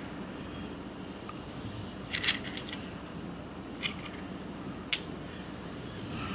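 Light metallic clinks of metal wet-clutch shoes knocking together as they are handled: a quick cluster about two seconds in, then single clinks near four and five seconds.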